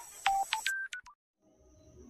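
A quick run of four or five short electronic beeps at different pitches, the closing notes of an intro jingle, followed by a brief gap and faint room tone.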